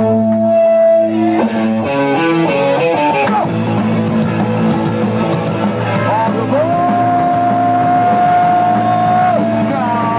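Punk band playing live with electric guitars, bass and drums, loud: held notes, a quick run of changing notes, then the full band comes in about three to four seconds in, with one long held note near the end.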